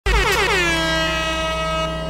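DJ air-horn sound effect opening a hip-hop mixtape track: a horn blast that warbles in pitch for its first half second, then holds steady and slowly fades over a low bass tone.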